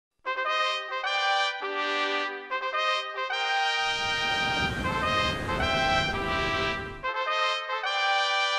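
Orchestral intro led by a trumpet-like brass fanfare: a run of short notes, then a long held chord over a low rumble that stops about seven seconds in, and the short notes start again.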